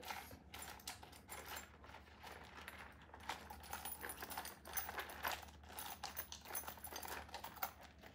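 Hands working keys into a small leather handbag with a metal chain strap, giving scattered light clicks, metal clinks and leather rustles.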